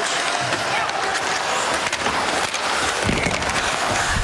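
Ice hockey arena sound during live play: a steady crowd hubbub with skate blades scraping the ice and light clicks of sticks on the puck. A low thump comes about three seconds in.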